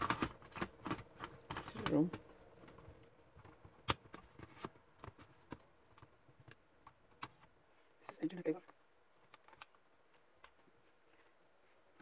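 Light clicks and knocks of a laptop's optical CD drive being slid back into its bay in the bottom case and seated, with one sharp click about four seconds in; the clicks thin out and stop a little past halfway.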